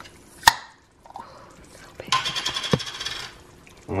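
A glass jar of pasta sauce being handled and opened: a sharp click about half a second in, then about a second of rough, rasping scraping from the lid.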